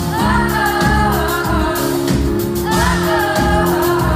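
French pop song playing, with two sung vocal phrases over a regular drum beat and bass.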